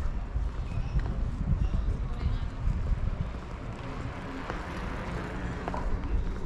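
Outdoor street ambience: an uneven low rumble of wind on the microphone, with faint distant voices.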